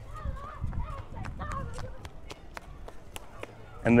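Wind gusting on the microphone, strongest in the first second or two, with faint distant voices and a run of light footstep-like clicks on pavement.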